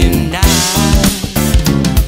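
Funk track with a five-string electric bass playing a busy, moving line over drums and other instruments.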